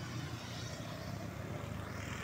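Motor scooter passing at road speed: a steady low engine hum with tyre noise on the asphalt, a faint whine in the middle, and a little more road noise near the end as a larger vehicle comes up.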